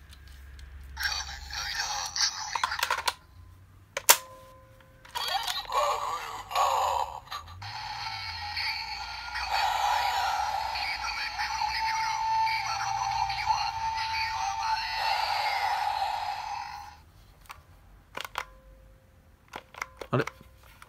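Kamen Rider Ex-Aid DX Gashacon Bugvisor II toy, docked as the Buggle Driver II, playing electronic voice calls, sound effects and music through its small speaker. First come short bursts and sharp button clicks. From about seven seconds in, a long stretch of music and effects plays for about ten seconds and then stops, followed by a couple of clicks near the end.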